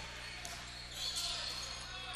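A basketball being dribbled on a hardwood gym floor, heard faintly under steady gym and crowd noise. A faint high squeak comes in about a second in.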